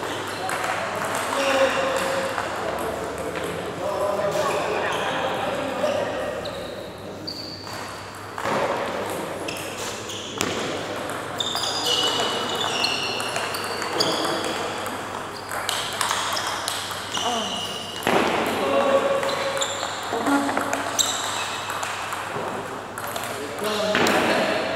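Table tennis ball being struck back and forth, short sharp clicks off the paddles and table in rallies, with people's voices in the background.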